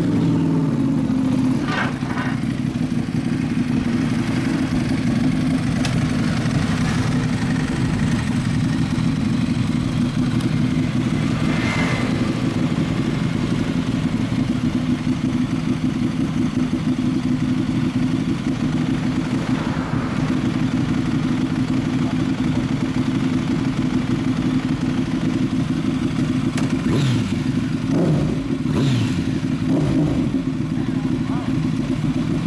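Sport motorcycle engines idling steadily, with a couple of short revs near the end.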